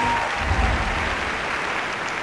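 A large audience applauding, with steady, even clapping.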